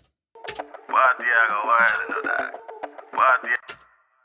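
A vocal played back through a telephone-effect EQ: a thin, narrow voice with the lows and highs cut away, fed into a delay. It comes in several short phrases.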